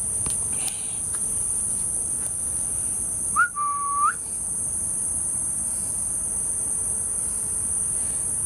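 Insects chirring in a steady, continuous high-pitched drone. About three and a half seconds in comes one short whistle, under a second long, holding one pitch and rising at each end.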